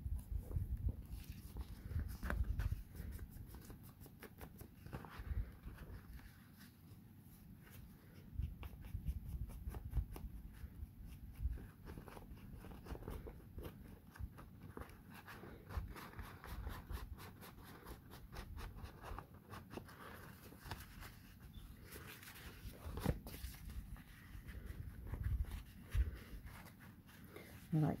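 Old book pages being torn by hand along their edges and handled, a long run of small crackling rips and paper rustles with occasional soft thumps on the cutting mat.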